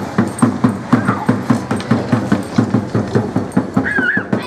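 A drum beating a steady, fast rhythm of about four to five strokes a second.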